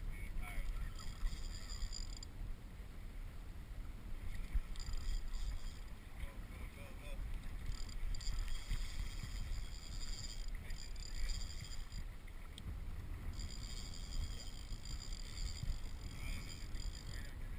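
Wind and choppy water rumbling against a kayak, heard through a hull-mounted action camera, with a hiss that comes and goes every few seconds.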